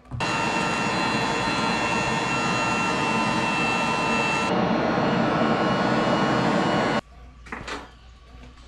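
Electric air blower forcing air through a hose into a brick charcoal forge: a loud, steady rush with a whine. It comes on at the start and cuts off suddenly about seven seconds in.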